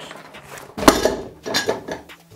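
Clicks and metallic clinks of a Godox 60x90 rectangular softbox being assembled. The loudest clack comes about a second in, with a few more half a second later.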